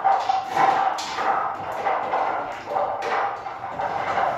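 A bear vocalizing in a string of short, irregular calls.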